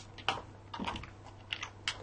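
Computer keyboard typing: a handful of separate, irregularly spaced keystrokes.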